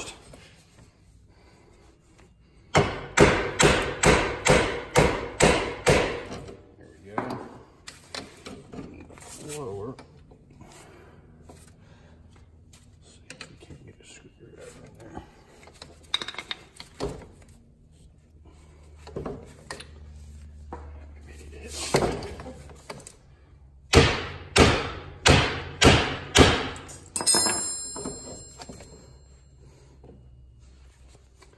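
Hammer blows on the front steering knuckle of a 2006 Yamaha Grizzly 660 to knock the ball joints loose: a quick run of about eight strikes, a few single knocks, then about six more near the end, the last one leaving a high metallic ring.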